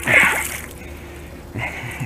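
A pike thrashing in shallow muddy water at the edge of a river, making a sudden splash at the start that fades over about half a second, with a smaller splash near the end.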